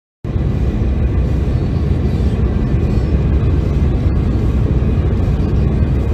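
Steady low rumble of road and wind noise inside a car moving at highway speed, starting a moment in.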